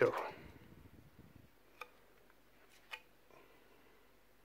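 Light handling rustle as a laptop's cooling fan and copper heat-pipe heatsink assembly is lifted out and laid aside, with two short, sharp clicks about two and three seconds in.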